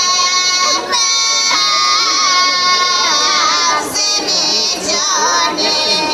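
Women's folk group singing a Pomak polyphonic song, unaccompanied, in long held notes broken by short ornamental pitch turns. The singing starts abruptly at the opening, with brief breaths for new phrases about one second and four seconds in.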